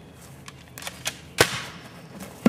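A few sharp cracks, the loudest about one and a half seconds in, with lighter ones just before it.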